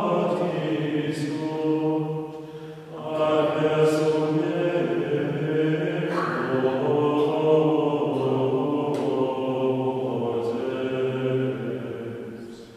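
Small group of male voices singing Latin plainchant in unison, with one brief pause for breath about three seconds in.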